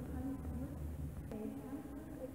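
A faint person's voice over a steady low rumble.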